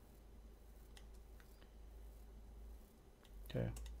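A few faint, separate computer mouse clicks over a low, steady hum.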